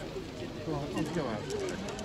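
Background conversation of people nearby, indistinct and quieter than the narration.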